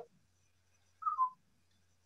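Mostly quiet, with one short whistle-like tone about a second in that falls slightly in pitch.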